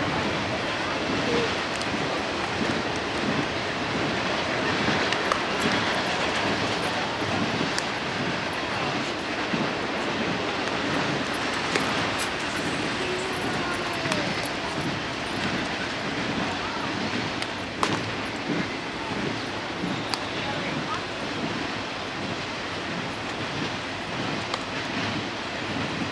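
Steady, fluttering outdoor noise, typical of wind buffeting a camera microphone, with faint distant voices and a few light clicks.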